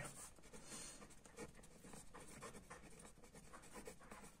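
Faint, irregular scratching strokes of a felt-tip marker writing on paper.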